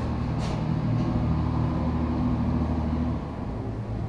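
A steady low mechanical rumble with a faint held hum, dropping in level about three seconds in.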